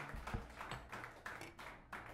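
Faint, sharp handclaps, roughly three a second, from a small audience after a rock song ends.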